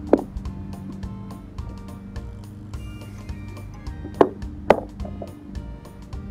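Background music, with three sharp clicks of a plastic food container's lid being unclipped and lifted off. One click comes at the start, then two more half a second apart about four seconds in.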